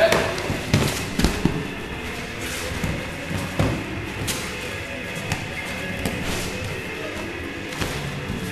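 Thuds of bodies and feet hitting foam floor mats as two sparring partners go through a takedown and scramble, the sharpest knocks in the first couple of seconds, over music playing in the background.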